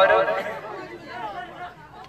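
Speech only: a man's word at the start, then quieter background chatter of several people's voices.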